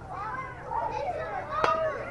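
A baseball bat hitting a pitched ball: one sharp crack about one and a half seconds in, amid children and spectators shouting, which grows louder just after the hit.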